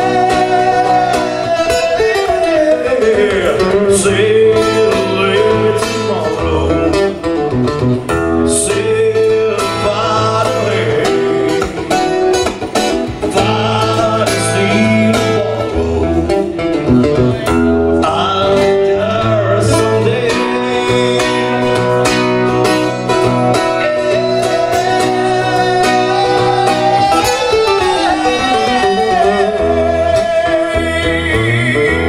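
A live acoustic rock band playing a song: acoustic guitar with a singing voice, heard through the PA by a camera microphone in the crowd.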